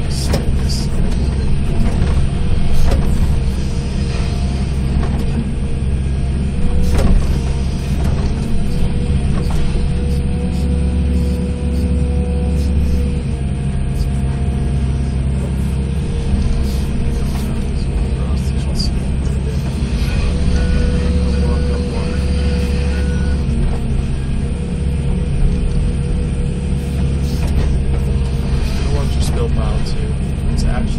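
Excavator's diesel engine running under load, heard from inside the cab, with a whine that comes and goes as the bucket is worked. Scattered knocks and scrapes come from the bucket in rocky soil.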